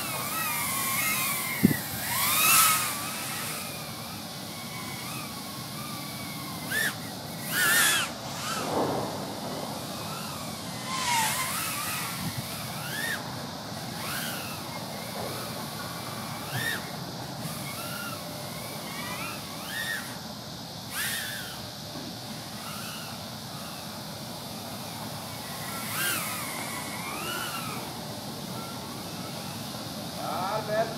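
Brushless motors and propellers of a 100 mm mini racing quadcopter whining, the pitch rising and falling with the throttle as it flies about, and swelling loud a few times as it passes close in the first dozen seconds. A single sharp click comes near the start, over a steady rushing background.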